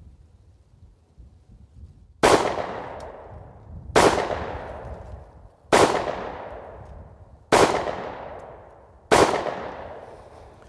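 Five shots from a Springfield Armory 1911 Ronin EMP 9mm compact pistol, fired slowly and evenly about every 1.7 seconds, starting about two seconds in. Each shot trails off in a long echo.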